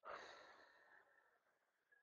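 A man breathing out in a long, faint sigh-like exhale that starts suddenly and fades away over about a second and a half, followed by a tiny click.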